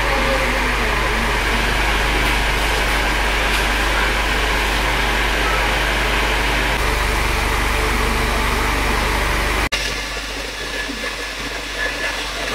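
A running electric appliance gives a steady hiss over a constant low hum. It cuts off suddenly about ten seconds in, leaving quieter room sound.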